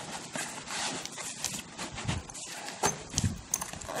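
Fabric of a padded nylon travel bag rustling as a small trailer wheel is pushed into its top compartment, with a few sharp knocks and dull thumps in the second half.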